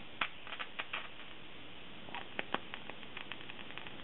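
Small sharp clicks and snaps as the wire leads of a hand-held capacitor bank touch and scrape the pins of a CPU, discharging into it. The clicks come in a scatter, most in the first second and a few more about two to two and a half seconds in.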